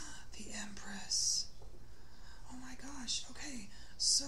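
A woman speaking softly under her breath, half-whispered words in two short stretches, with a sharp hissing 's' about a second in.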